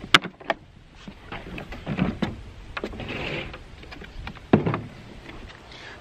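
Hard plastic clicks and rubbing as the motor head of a RIDGID Pro Pack wet/dry shop vac is unlatched and lifted off its collection tub: a sharp click at the start, a short scrape in the middle, and a louder knock about four and a half seconds in as the head is set down.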